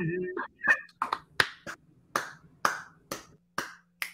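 A string of sharp hand claps or snaps, about two a second and a little uneven, each one short and separate.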